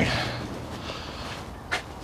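Loose foundry sand hissing and trickling as a freshly poured metal casting is lifted out of its sand mould, with one short scrape near the end.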